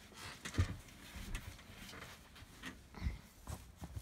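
Books being dropped and tossed onto a pile and into a fire tub, giving several irregular dull thumps and knocks, the loudest about half a second in and another about three seconds in.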